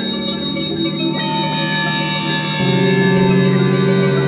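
Space ambient music made of long held tones layered into a drone. A new, fuller low chord comes in a little past halfway, and the music grows slightly louder.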